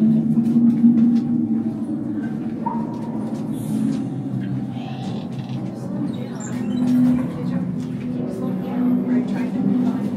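Indistinct murmur of voices, with faint music underneath.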